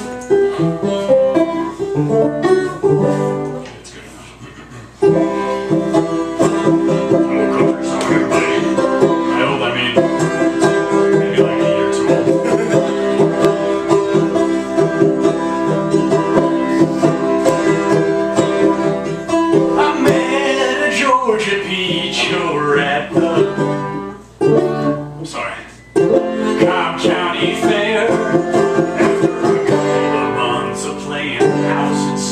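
Live acoustic music on a small plucked string instrument, strummed and picked with ringing, held notes. It drops quieter for about a second, about four seconds in, and breaks off twice briefly in the second half.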